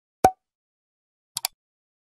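A short cartoon pop sound effect, then a quick double mouse click about a second later, typical of a like-and-subscribe animation.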